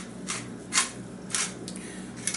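Hand pepper mill grinding peppercorns in short twists, a gritty burst about every half second.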